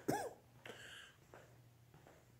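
A man's short chuckle, the tail end of a laugh, right at the start, its pitch rising and falling; then only faint room sound.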